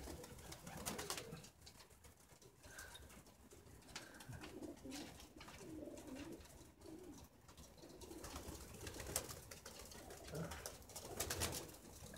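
Domestic pigeons cooing softly, with low wavering coos several times, among scattered faint clicks and rustles.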